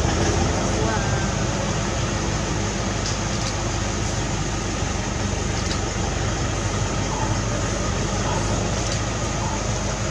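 A safari vehicle's engine running steadily, a low hum under an even rush of noise.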